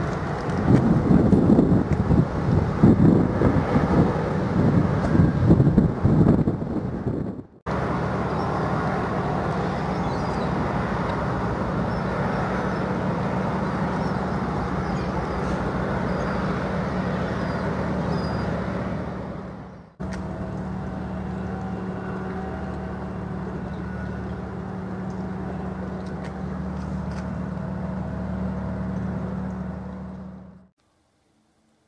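Wind buffeting the microphone for the first several seconds. After a break, a steady low drone from an offshore supply vessel's diesel engines runs as she manoeuvres slowly in harbour, with a constant hum underneath. The drone breaks off briefly once more about two-thirds of the way through.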